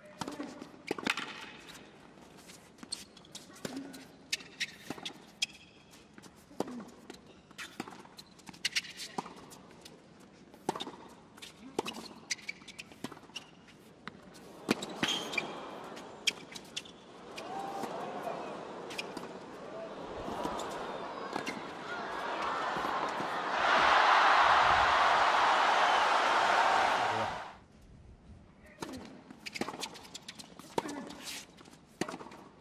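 Tennis rally on a hard court: a string of sharp racket strikes on the ball and ball bounces. The crowd stirs and then breaks into loud applause and cheering for a few seconds, which cuts off suddenly near the end, followed by a few ball bounces.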